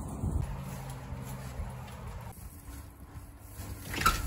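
Steady low mechanical hum and rumble under footsteps on pavement, then a sharp click near the end as a door lock is worked.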